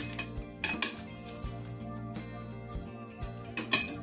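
Knife and fork clinking and scraping against a plate while a portion of baked food is cut, with a few sharp clinks, the loudest at the start and near the end.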